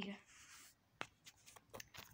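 Near silence, broken by a few faint handling clicks, the sharpest about a second in.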